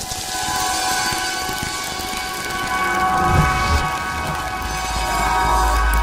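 Electronic ident sound design: a held synth chord over an airy, hissing whoosh, with a low rumble swelling in the second half.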